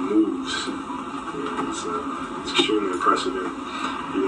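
Speech playing back from a video clip, with music underneath.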